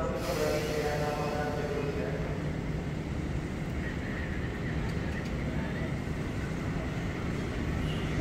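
A train approaching along the tracks, making a steady low rumble.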